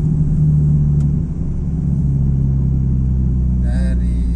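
Car engine and road noise heard inside the moving car's cabin: a steady low hum whose pitch drops a little just over a second in.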